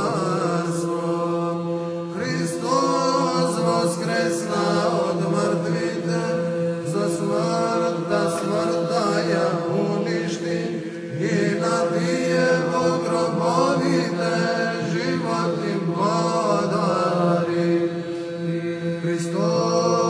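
Male voice chanting an Orthodox church hymn in ornamented, melismatic lines over a steady held drone note.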